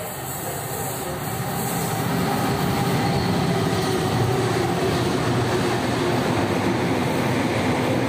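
British Rail Class 59 diesel-electric freight locomotive, with its EMD two-stroke diesel engine, approaching and passing at speed, growing louder over the first two or three seconds, then the steady rumble of its hopper wagons rolling by.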